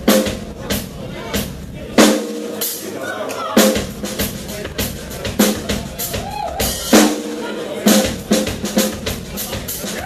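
Drum solo on a Tama drum kit: loud tom, bass drum and cymbal hits, the biggest about every second and a half with quicker fills between them.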